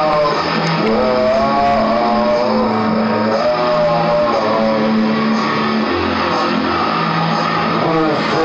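Music: a song track with guitar, long held bass notes that change every couple of seconds, and a wavering melody line above them.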